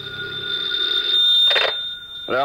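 Telephone ringing sound effect from an old radio drama, swelling as the last note of an organ music bridge fades out.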